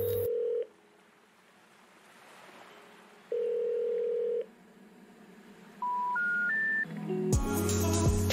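A telephone ringing tone, one steady beep heard twice about three seconds apart, then three short tones stepping upward, the signal of a number not in service. Music with a bass line comes in near the end.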